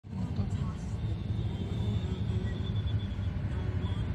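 Steady low rumble of idling cars and motorcycles in stopped traffic, heard from inside a car, with indistinct crowd voices in the background.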